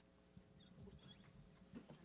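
Near silence: room tone with a faint low hum and a few faint, brief high squeaks.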